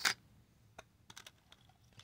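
Light, scattered clicks and taps of small metal earrings and fingertips against a plastic compartment organizer tray as the earrings are handled, with the clicks bunched about a second in.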